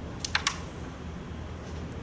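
Carrom shot: three sharp clicks in quick succession, about a quarter to half a second in, as the striker is flicked into a coin and the pieces knock against the board's wooden frame.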